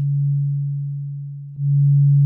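Korg Volca Drum playing a low sine-wave note, a single steady pitch that fades slowly. About one and a half seconds in it is retriggered with a click and swells up gradually rather than starting at once: the amp envelope's attack being lengthened.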